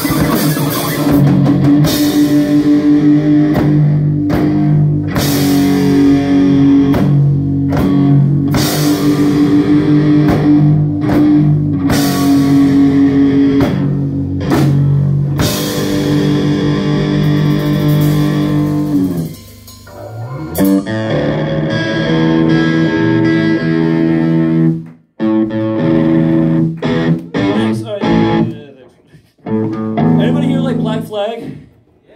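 Live rock band playing an instrumental passage on electric guitars and drum kit: sustained chords with repeated crashes, thinning out about two-thirds of the way through to guitar notes broken by short stops.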